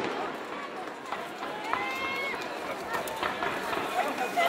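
Spectators' voices and calls in an outdoor crowd as the sound of a fireworks barrage dies away at the start, with a few faint crackles.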